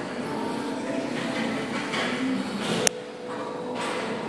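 Gym room noise: a steady mixed murmur of the room, with one sharp click about three seconds in.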